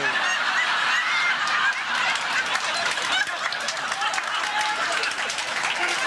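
Audience laughing together, loud and sustained, with scattered clapping joining in.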